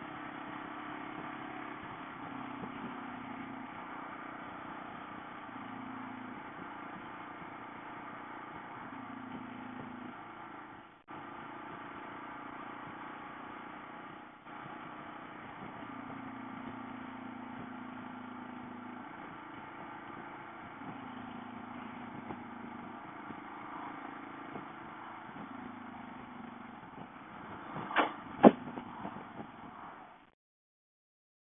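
Motorcycle engine running while riding along at road speed, its pitch stepping up and down with the throttle over a steady haze of road noise. The sound cuts out briefly twice in the middle, and two sharp knocks come near the end, louder than anything else.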